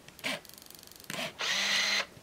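Compact 35mm film camera (Olympus Infinity Stylus Zoom 70) taking a red-eye-reduction flash shot: a click, then rapid ticking during the pre-flash sequence and a second click as the shutter fires. The film-advance motor then runs steadily for about half a second, winding on to the next frame.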